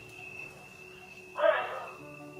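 A single short, loud voice-like call about one and a half seconds in, heard over a steady high-pitched tone.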